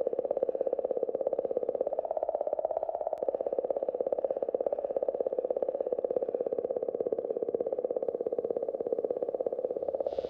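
A steady midrange drone with a rapid, even pulse that holds at one level throughout.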